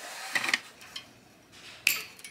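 Scissors pulled out of a desk pen cup, clattering against the pens and other tools in it, followed by a sharp click near the end.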